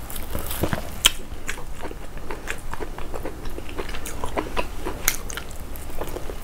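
A person chewing a mouthful of fufu and peanut soup close to the microphone: irregular wet smacks and clicks of the mouth, with a sharper click about a second in.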